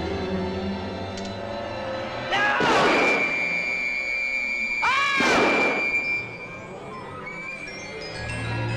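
Synthesized horror film score: low sustained notes give way to two sweeping swells about two and a half seconds apart over a held high note, which fades out near the end.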